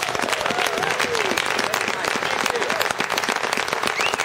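Audience applauding and cheering at the end of a song, with dense clapping and a few rising-and-falling whoops.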